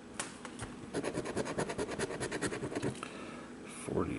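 Scratch-off lottery ticket's coating being scratched away in quick strokes, about ten a second, mostly from about a second in until near the end.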